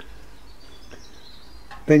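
Quiet background with a faint, high, thin bird call lasting about a second.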